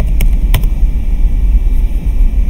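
A few computer keyboard key clicks as a web address is typed, over a steady low rumble.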